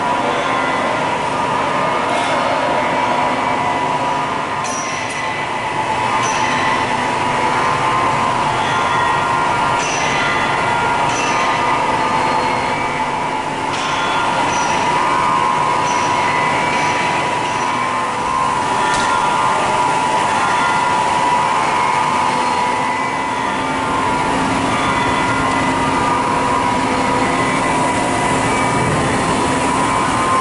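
Steady machine-shop noise of metalworking machine tools running, with a constant high whine and scattered short, high chirps.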